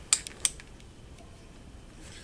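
A civil defense radiation survey meter's rotary selector switch clicking through its detents as it is turned: two sharp clicks in the first half second. Then low room tone.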